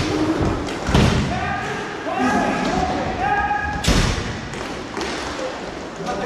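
Inline hockey play echoing in a large hall: sharp thuds of puck, sticks and boards, one at the start, the loudest about a second in and another near four seconds. Players shout in between.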